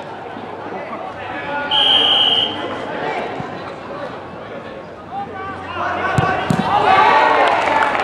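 A referee's whistle blows once, briefly, about two seconds in, to start a penalty kick. Just after six seconds there are two thuds as the football is struck and meets the diving goalkeeper, and spectators break into shouts.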